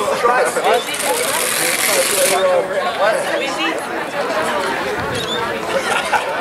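Overlapping voices of players and people at the field chattering, too indistinct for words, with a high hiss under them that cuts off suddenly about two seconds in.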